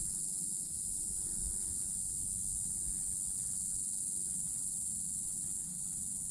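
Steady, high-pitched buzzing of an insect chorus, unbroken throughout, with a low rumble underneath.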